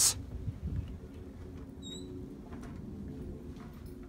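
A wooden screen door pulled open by its handle and walked through, with one short high squeak about halfway and a few faint knocks.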